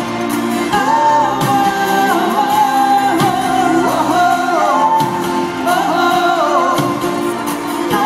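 Live rock band performance heard from the audience in an arena: sung vocals over guitar, keyboards and drums, with the hall's reverberation.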